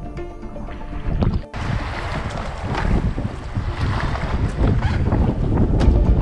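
Background music over river sound; about a second and a half in, the sound changes abruptly to wind buffeting the microphone and river water running past an inflatable raft.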